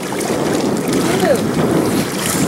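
Wind buffeting the microphone over the wash of water around a moving boat, with a short snatch of a voice about a second in.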